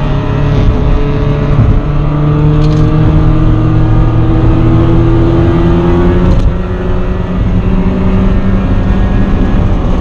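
Miata's four-cylinder engine heard from inside the cabin on track, pulling hard with its pitch climbing for several seconds, then dropping suddenly about six seconds in, as at a gear change or lift, before running on at a steadier pitch.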